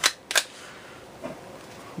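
Two sharp plastic clicks about a third of a second apart, from a cheap spring-powered foam-dart pistol being handled and cocked while it is reloaded.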